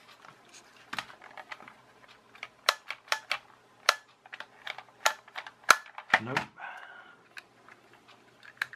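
Irregular sharp plastic clicks and taps from handling a toy remote-control transmitter and working its sticks and switches, with the loudest click about five and a half seconds in.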